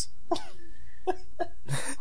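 A person coughing briefly, with faint voice sounds around it.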